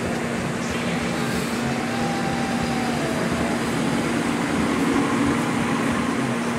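Chevrolet Corvette's V8 engine running as the car drives away, a steady drone over outdoor noise.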